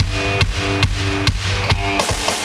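Live rock band playing an instrumental passage: electric guitars holding sustained chords over a steady drum-kit beat of a little over two hits a second.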